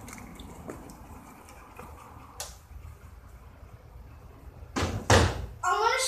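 Quiet room tone with a faint click, then two loud knocks close together near the end, and a child's voice starting just after them.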